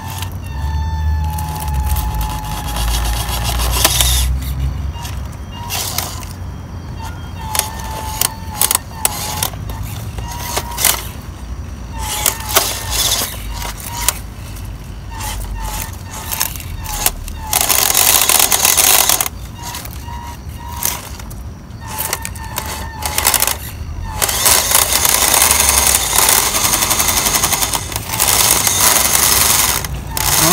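Small electric motor and gearbox of a WPL C24 RC crawler truck whining in short throttle blips while its tyres scrabble and knock on rock. Near the end come longer, louder stretches of the drivetrain run hard as it climbs.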